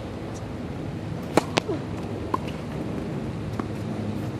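Tennis ball struck with a racket on an outdoor hard court: two sharp pops close together about a second and a half in, the first the loudest, then a lighter pop and a fainter one later, over steady background noise.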